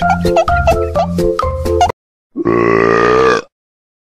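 Bouncy music with a steady beat stops abruptly, and after a short pause a single long, low burp sound effect follows, about a second long, marking the end of the gulp of the drink.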